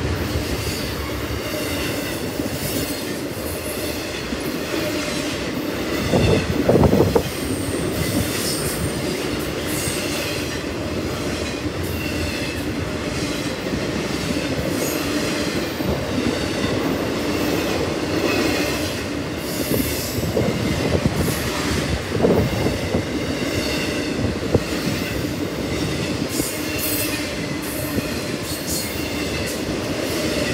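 Intermodal freight train of container and trailer flatcars rolling past: steady rumble and clatter of steel wheels on the rails, with high wheel squeal at times. It swells louder briefly about seven seconds in.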